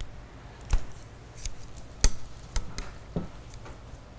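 Steel digital calipers being handled and closed onto a chrome hydraulic cylinder rod to measure its outside diameter: about five sharp metallic clicks and taps, the loudest about two seconds in.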